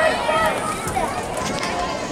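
Spectators chatting in the stands: indistinct voices of several people talking at once.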